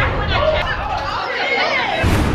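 Several voices talking over one another, with little or no music behind them.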